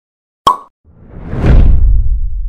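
Edited intro sound effects: a short pop about half a second in, then a whoosh that swells into a deep rumble, loudest near the end.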